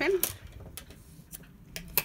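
A few small sharp clicks and light taps of metal scissors being handled to trim a yarn tail, the loudest near the end.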